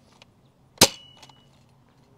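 Adventure Force Nexus Pro foam dart blaster firing a single full-length dart: one sharp crack a little under a second in, followed by a brief thin high ringing tone.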